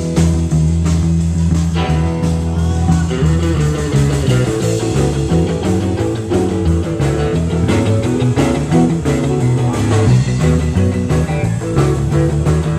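Live rock and roll band playing a blues shuffle: electric guitars, electric bass, drums and keyboard.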